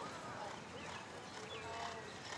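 Hoofbeats of a horse cantering on sand arena footing, with people talking in the background.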